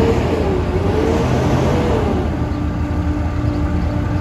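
Diesel engine of a wheeled armoured military vehicle running close by, loud and steady underneath. Its note sways up and down over the first couple of seconds, then settles into a steady hum.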